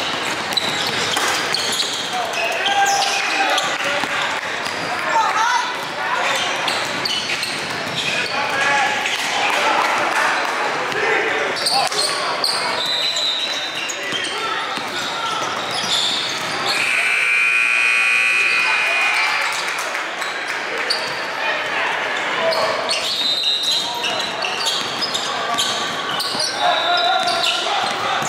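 Live sound of an indoor basketball game: players' and spectators' voices and a basketball dribbling on a hardwood gym floor. About seventeen seconds in, a steady high tone sounds for about two and a half seconds.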